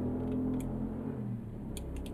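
A few faint computer mouse clicks, one about half a second in and a pair near the end, over a low steady hum.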